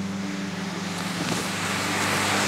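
Steady mechanical hum with an even hiss from the pumps and filters of a wall of aquarium tanks, slowly growing louder.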